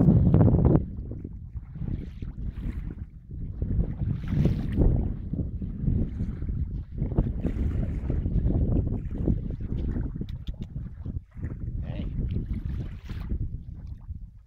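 Wind buffeting the microphone: an uneven low rumble that rises and falls in gusts, strongest in the first second.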